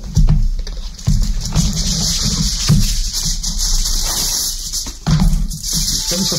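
Aluminium foil being pulled off its roll, torn from the box and crinkled, with a steady crackle and a few dull knocks as the box is handled.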